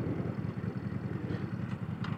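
Honda Shadow's V-twin engine running at low revs, a quick even pulsing beat, as the motorcycle rolls slowly through a turn.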